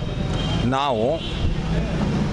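A steady low engine hum, as of vehicles on a nearby street, runs under a man's single short spoken word about a second in.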